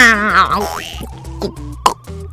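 Cartoon eating sound effects over background music: a wobbling voiced 'wa-aang' chomp, then a long rising whistle-like tone, with a sharp click just before the end.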